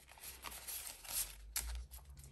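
Faint rustling of Australian polymer banknotes and a clear plastic cash binder being handled, with a few light clicks.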